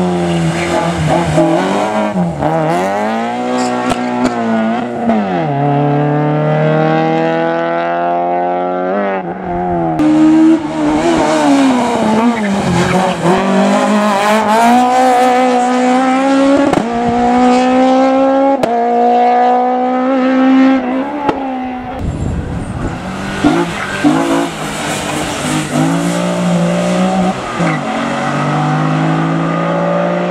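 Hillclimb race cars accelerating hard up a mountain road one after another at full throttle. Their engine notes climb through the revs and drop back at each gear change.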